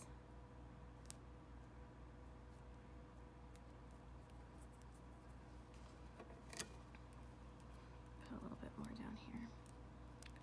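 Near silence with a faint steady hum, broken by two small clicks as the cable and electrical tape are handled, the second louder, about six and a half seconds in. A faint murmured voice comes near the end.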